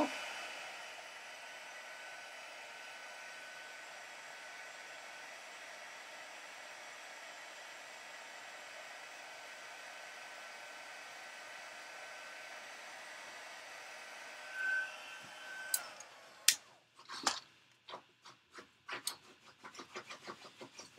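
Stampin' Up! heat tool blowing steadily with a faint constant whine, melting white embossing powder on a stamped cardstock strip. It stops about four seconds before the end, followed by several light clicks and taps.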